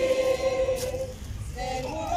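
A congregation singing a hymn together: a long held note fades out about a second in, and a new phrase begins near the end.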